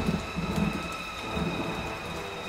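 Low rumbling and an even hiss, like a thunder-and-rain effect on a show soundtrack, fading in level over the first second, with faint steady high tones held above it.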